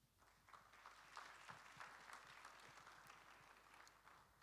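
Faint applause from a congregation: a dense patter of many hands clapping that starts about half a second in and thins out near the end.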